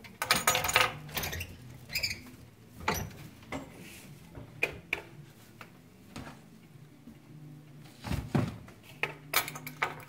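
Wooden broom-winding machine in use as broom corn is wound and wired tight onto a broom handle: irregular knocks, clicks and creaks from the machine and the dry straw, with a heavier thump about eight seconds in.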